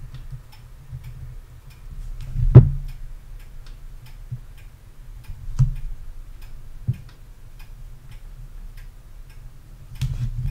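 Computer keyboard keystrokes in a faint, evenly spaced ticking run, over a steady low hum. A sharp knock about two and a half seconds in is the loudest sound, and a few softer knocks follow.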